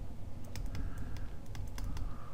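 Stylus tapping and scratching on a tablet screen while handwriting a word: a run of irregular light clicks over a low background hum.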